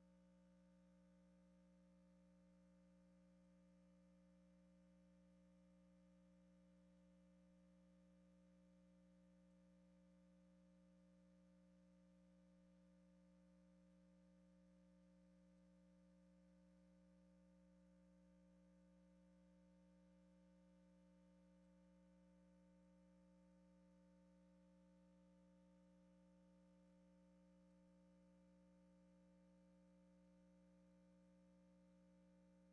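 Near silence: only a faint, steady electrical hum made of a few fixed tones, unchanging throughout.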